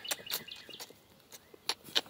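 A few short kissing smacks as a person kisses a dog, the loudest two near the end.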